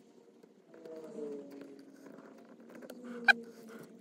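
Faint squeaking of a rubber hair band being stretched with a screwdriver tip over the driving wheel of a model steam locomotive, fitted as a traction tire. There is one sharp click a little over three seconds in.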